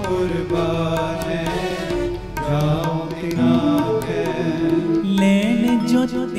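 Two harmoniums playing a held, stepping melody with reedy sustained tones, over a tabla pair keeping time with light strokes: the instrumental accompaniment of Sikh gurbani kirtan.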